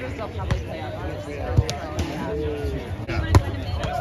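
Volleyball rally: several sharp hits of hands and arms on the ball, the loudest about three and a half seconds in, over the voices of players and onlookers.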